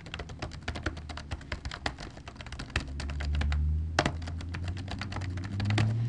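Fast typing on a computer keyboard: a dense run of clicking keystrokes. A low hum swells underneath from about halfway through.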